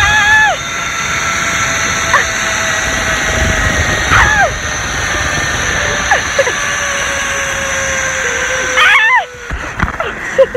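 Zip line trolley running down a steel cable: a steady whine that sinks slowly in pitch under a rush of wind, with short vocal cries every couple of seconds. The run ends about nine seconds in, when the noise drops sharply at the landing platform.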